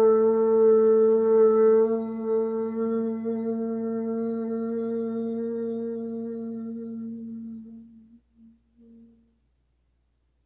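A woman chanting a long, quiet OM on one steady pitch. It grows softer about two seconds in, then fades out with a few broken pulses near the end.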